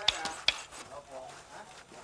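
Two sharp metal clinks about half a second apart from a hanging steelyard scale's hook and weights as a load of sulfur is weighed, followed by quieter knocks.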